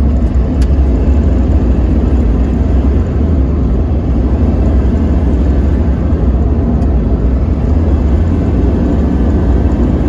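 A 2001 Chevrolet Duramax LB7 6.6-litre V8 turbodiesel heard from inside the cab while the truck is driven under load, the turbo building boost: a steady, loud low drone of engine and road noise. A faint single click comes about half a second in.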